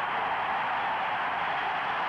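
Large arena crowd cheering loudly and steadily, a dense unbroken wall of voices, just after a dunk.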